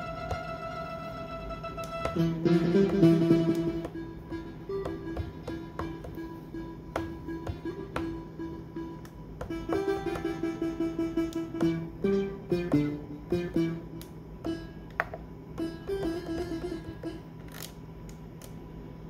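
Odyssey synthesizer plug-in on an Akai MPC One, an emulation of the ARP Odyssey, playing pluck-type presets from the pads. A held tone gives way about two seconds in to a louder flurry of notes, followed by a run of short, repeated plucked notes.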